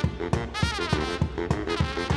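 Live brass-house music by trumpet, baritone saxophone and drums: a trumpet line with pitch bends over a pulsing low saxophone riff, driven by a kick drum beating about four times a second.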